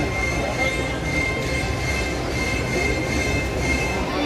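Steady din of a large stadium crowd, a dense rumbling murmur with a thin, steady high-pitched tone running through it.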